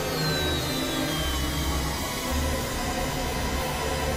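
Experimental electronic synthesizer music: a dense, noisy drone over low tones that shift in steps, with a thin high tone gliding slowly downward over the first two seconds.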